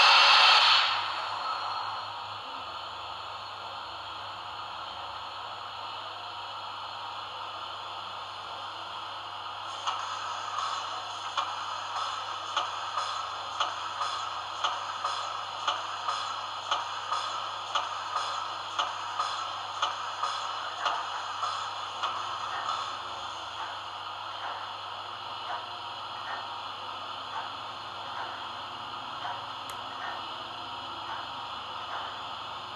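Sound decoder of an H0 model of steam locomotive 18 201 playing steam sounds through its small speaker: a loud hiss of steam at the start that fades within a couple of seconds into a steady hiss, then, from about ten seconds in, exhaust chuffs at about two a second as the model moves off slowly, growing weaker after about twenty seconds.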